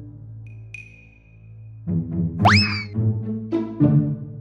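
Cartoon background music with comic sound effects: the chords pause and a thin high tone holds for about a second and a half, then the music comes back and a quick rising, whistle-like glide sounds about two and a half seconds in.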